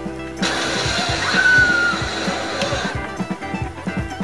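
Film soundtrack music from a VHS tape playing through a TV's speakers. About half a second in, a loud rushing noise with a short whistling tone comes in over the music and lasts about two and a half seconds before cutting off.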